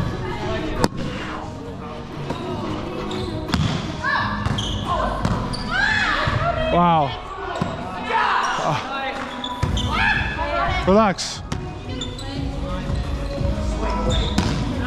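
Indoor volleyball rally on a hardwood gym floor: sharp slaps of hands on the ball, athletic shoes squeaking on the wood, and players' voices, all echoing in the hall.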